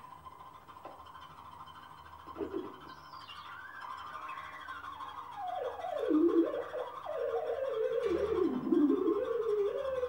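Free-improvised electronic music. A steady high tone holds at first. About three seconds in, a single wavering electronic tone glides down from very high to low, then wanders up and down in pitch and grows louder toward the end.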